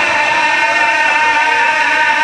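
A man's voice holding one long, high, steady sung note in melodic religious recitation, amplified through microphones.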